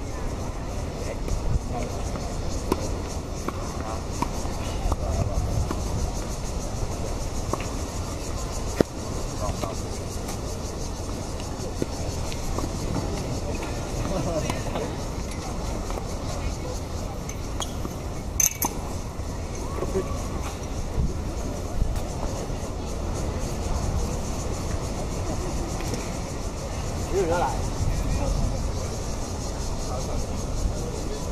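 Tennis balls struck by rackets during an outdoor rally, heard as a few sharp pops spread through the stretch, over a steady low rumble and faint voices chatting.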